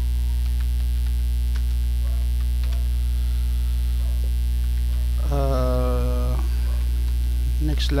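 Steady electrical mains hum on the recording, loud and constant, with faint keyboard key clicks scattered through it. About five seconds in, a voice holds a drawn-out 'uh' for about a second.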